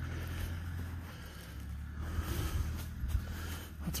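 Low, steady engine drone of a log skidder working, with a few faint ticks and rustles of footsteps through grass and brush.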